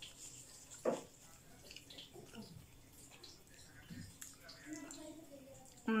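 Faint wet chewing and lip-smacking as a person eats a mouthful of instant ramen noodles, with one sharper smack about a second in.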